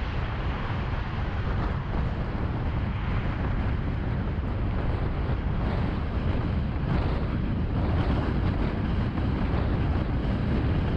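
Car cruising at freeway speed: a steady rushing of tyre and wind noise with a heavy low rumble and some wind buffeting on the microphone.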